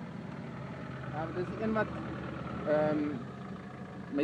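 Off-road 4x4 engine running steadily at low revs with a low hum, and short bursts of voices twice in the middle.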